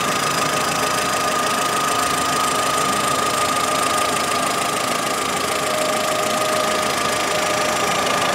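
Volkswagen Saveiro's 1.6-litre four-cylinder petrol engine idling steadily, heard close up in the engine bay, with a constant high-pitched whine over the running sound.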